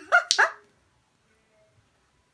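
A woman's brief laugh: two short bursts that die away within the first half second.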